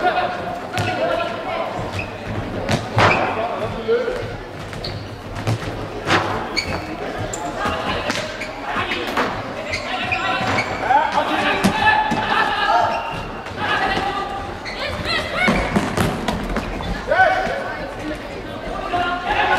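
Several sharp hits of a football being kicked and bouncing on a sports-hall floor, echoing in the hall, among shouts and chatter from players and onlookers.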